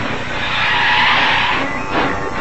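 Car tyres screeching in a skid, a cartoon soundtrack sound effect; the hiss dies away near the end.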